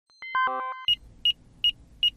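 Channel logo intro sting: a quick falling run of chime-like notes, then short high beeps repeating about two and a half times a second over a low rumble.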